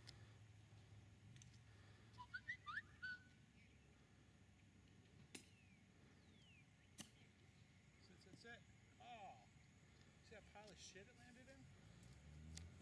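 Near silence outdoors, broken by a few faint chirps about two seconds in and a single sharp click about seven seconds in: a golf iron striking the ball on a chip shot.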